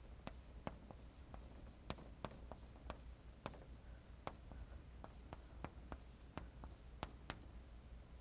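Chalk writing on a chalkboard: a string of faint, irregular sharp taps and scratches as letters and symbols are written.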